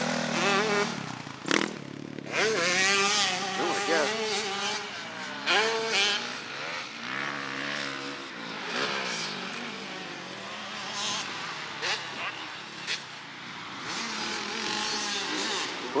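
Motocross dirt bike engines on the track, revving repeatedly, their pitch rising and falling as the throttle is worked on and off.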